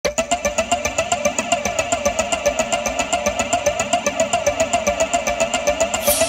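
An engine-like sound running steadily, with a rapid, even pulsing throughout.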